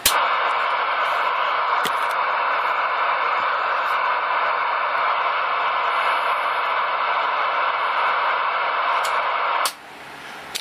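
Steady static hiss from a CB radio's speaker, starting abruptly and cutting off suddenly near the end, with a faint click or two along the way.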